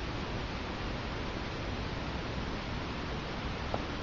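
Steady background hiss with no other sound, and a single faint tick shortly before the end.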